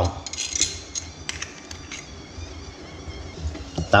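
Metal spoon clinking and scraping against a stainless steel mixing bowl while stirring peanut butter into sugar syrup, egg yolk and oil, with several light clinks in the first second or so.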